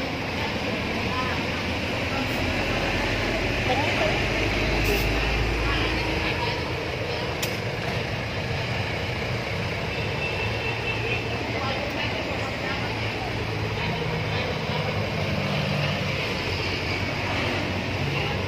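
Steady road-traffic and street noise, with no single distinct event.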